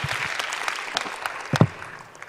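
Audience applauding, dying away toward the end, with a single thump a little before the applause fades out.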